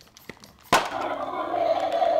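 A sharp crack as a toy blaster is fired at a toy T-Rex, followed by about two seconds of a loud, steady electronic growl from the toys.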